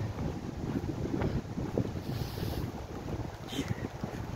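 Wind buffeting the phone's microphone outdoors: a low, uneven rumble with no clear pitch.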